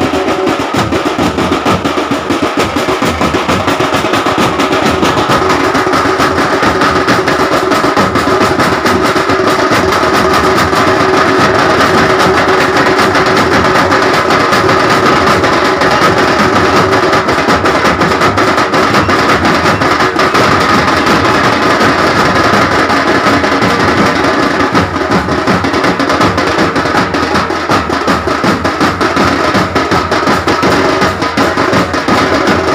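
Loud, fast drumming from a festival drum band playing a dense, continuous roll of strokes without a break, accompanying dancers.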